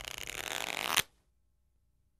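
A deck of playing cards being riffled: a dense, fast rattle lasting about a second that ends in a sharp snap.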